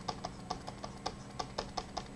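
Quick, light clicking at a computer, about five clicks a second, as brush strokes are dabbed onto a mask in Photoshop.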